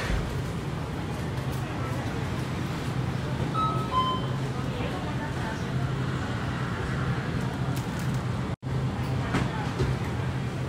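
Convenience-store ambience: a steady low hum of refrigeration and air conditioning under indistinct background voices, with a few short electronic beeps about four seconds in. The sound drops out for an instant near the end.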